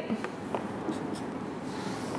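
Felt-tip marker writing a number on a paper worksheet held against a whiteboard: a few short, faint scratching strokes over room noise.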